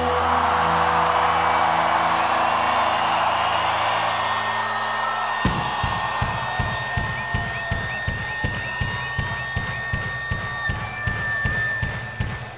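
Live rock band at a festival: a final chord rings out over a cheering crowd, then about five seconds in it cuts to a steady beat of sharp hits, about two a second, as the next song starts.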